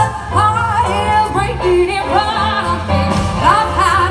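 Live performance of a jazz-styled pop cover: a female vocalist sings a held, wavering melody with vibrato, backed by a band with upright bass, piano and drums.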